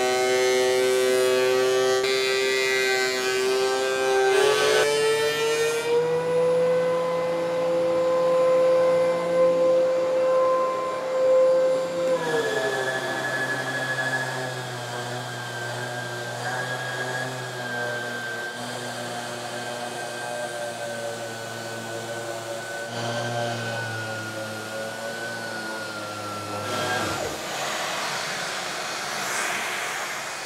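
Power tools running in turn with dust extraction: a DeWalt thickness planer, then a Rockwell random orbital sander drawing through a vacuum hose. Their motors give a steady whine that changes pitch several times as one tool gives way to another, with one motor winding down about twelve seconds in.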